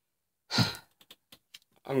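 A man sighs once, a short breathy exhale about half a second in. A few faint clicks follow, and then he starts speaking near the end.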